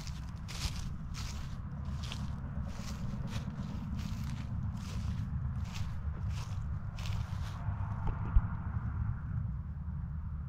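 Footsteps crunching through dry dead grass and weeds at a steady walking pace, about one and a half steps a second, stopping about three quarters of the way through. A steady low rumble runs underneath, and a single sharp tap comes shortly after the steps stop.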